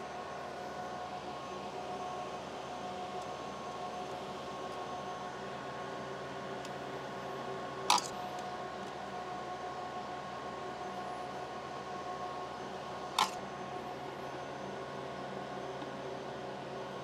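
xTool P2 CO2 laser cutter running in the background, a steady hum with several constant tones. Two short sharp clicks cut through it, about eight and thirteen seconds in.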